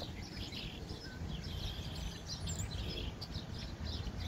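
A roosting flock of small birds chirping and calling over one another in a reed thicket, many short overlapping calls, over a low steady rumble.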